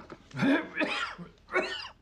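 A man clearing his throat, in two bouts about a second apart.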